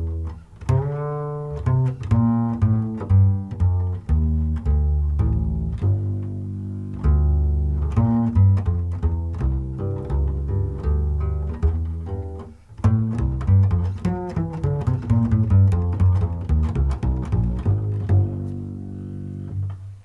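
Double bass played pizzicato in a jazz ballad: a flowing line of plucked notes, some in quick runs, with a brief gap a little past the middle.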